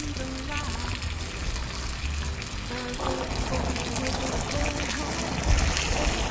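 Pork shoulder medallions sizzling steadily in a frying pan of broth over a raised flame, as the meat releases its juices, with soft background music underneath.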